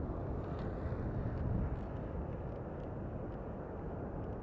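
Distant rumble of a Boeing 777F's GE90 jet engines as the freighter rolls out on the runway after touchdown, a steady low roar.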